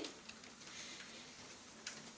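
A quiet pause: faint room tone with a few soft clicks, the sharpest one near the end.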